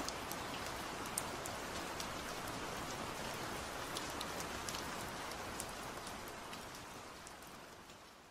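Recorded rain ambience: steady rain with scattered individual drops ticking, fading out over the last two seconds or so.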